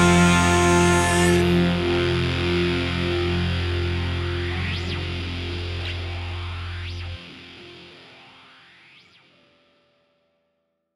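Distorted electric guitar's final chord ringing out and slowly fading away, the ending of a punk rock song. A low steady note under it cuts off suddenly about seven seconds in, and the chord dies to silence by the end.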